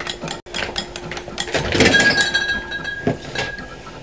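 Clinking and knocking of glass and containers being moved around in an open refrigerator, a series of short clinks with one item left ringing for about a second near the middle.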